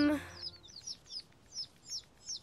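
Cartoon ducklings peeping: a run of short, high cheeps, each sliding down in pitch, about two or three a second. A voice or music note trails off just at the start.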